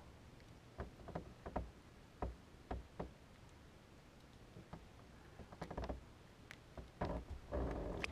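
Faint, irregular knocks and taps of handling on a bass boat's deck while a crappie is grabbed and held. There are a few quiet seconds in the middle, and the knocks come more densely near the end.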